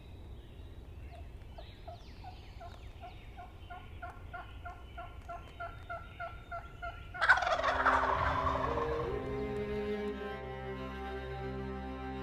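A wild turkey gobbler gobbles once from its roost, loud and sudden about seven seconds in, over faint bird chirps and a note repeated two or three times a second. Bowed string music, cello-like, comes in just after the gobble and holds steady tones.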